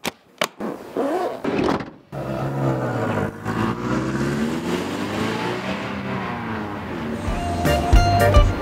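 A few sharp clicks as the metal latches of a hard equipment case are snapped open, then a Toyota minibus engine running as the van drives along the road, its pitch slowly rising and falling. Music comes in near the end.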